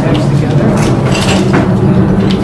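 A man talking over a steady low hum.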